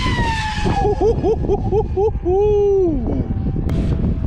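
The 540-size 4370 KV brushless motor of an RC flying wing whines as the plane passes overhead, its pitch sliding down. It is followed by a quick run of short wavering tones and then one longer, louder held tone. Heavy wind rumble on the microphone runs under it all.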